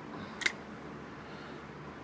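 Faint room tone with one short, sharp click about half a second in, from a revolver being handled.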